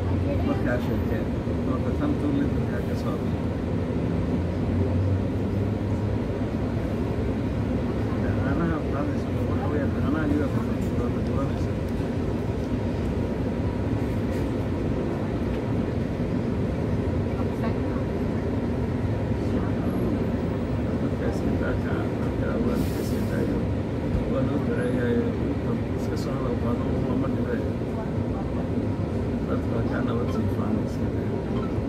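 Steady low engine hum heard from inside a London double-decker bus, with passengers talking quietly in the background. A brief high hiss sounds about three-quarters of the way through.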